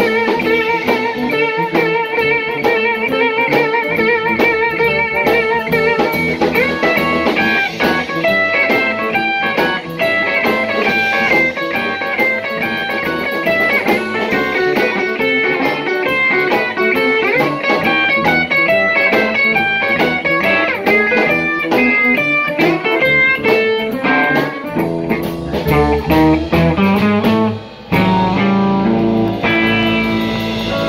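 Blues band playing live: an electric lead guitar solo over bass, rhythm guitar and drums. The guitar holds one long note with a wide vibrato for about six seconds, then plays fast runs of notes; near the end the sound drops out briefly and comes back in lower chords.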